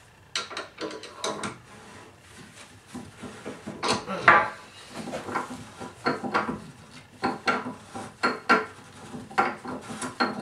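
Bathtub drain flange being unscrewed with a drain removal tool turned by a screwdriver: irregular metal-on-metal scraping and clinking in the drain, with a louder clank about four seconds in.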